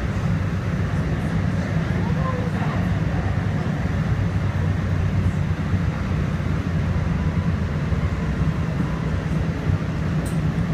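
Steady low rumble of a DART light rail car running, heard from inside the passenger cabin, with faint passenger voices under it.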